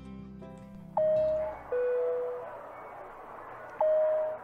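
Guitar-led intro music ends about a second in. Then an airliner cabin chime sounds twice, each time a high tone falling to a lower one, over a steady background hiss, the chime that comes before a seat-belt announcement.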